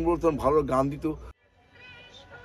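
A man speaking, cut off abruptly just over a second in. After a moment of silence, faint music with held tones begins.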